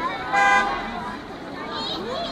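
A vehicle horn sounding one short, steady toot about half a second long, over a crowd's chatter.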